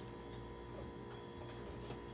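A few light clicks and taps of plastic cups and containers being handled on a kitchen counter, over a steady electrical hum.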